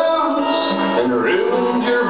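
Acoustic guitar strummed live, with a voice singing over it.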